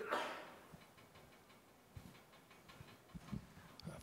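A quiet pause in a hall: a short rustling noise at the start fades within half a second. Then there is faint room tone with a few soft clicks near the end.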